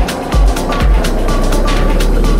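Techno DJ mix: the steady kick drum beats about twice a second, then drops out about half a second in, giving way to a sustained deep bass rumble with a slowly falling synth sweep above it while the hi-hats keep ticking.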